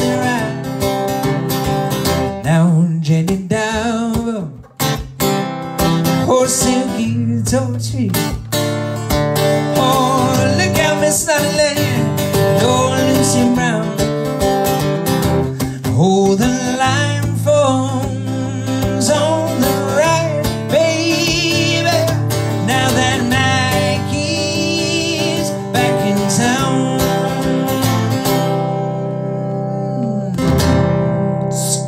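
Acoustic guitar strummed steadily while a man sings over it, settling onto a held chord near the end.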